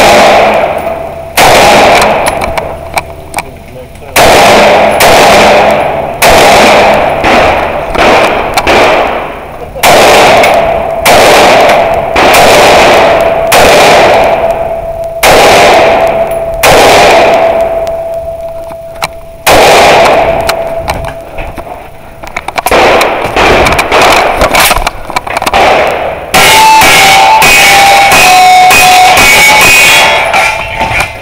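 Semi-automatic rifle shots fired singly and in quick groups of two to five, each shot leaving a ringing tail. About 26 seconds in, a faster, unbroken string of pistol shots takes over.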